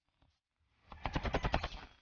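Cleaver rapidly chopping small red onions on a wooden cutting board: a fast run of about a dozen knocks of the blade against the wood in about a second, starting about a second in.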